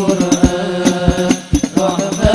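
Male voices chanting an Arabic sholawat in unison into microphones, over the steady beat of hadrah frame drums (rebana). The singing breaks off briefly about one and a half seconds in while the drum beat carries on.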